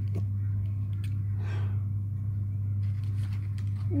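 A steady low hum, with a brief rustle about one and a half seconds in and a couple of faint clicks.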